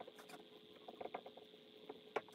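Marker writing on a whiteboard: faint, irregular short squeaks and taps of the pen strokes.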